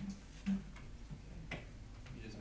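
A short dull knock about half a second in, then a couple of faint light clicks over low room hum.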